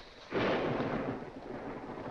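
Thunder, starting suddenly about a third of a second in and rumbling on without a break.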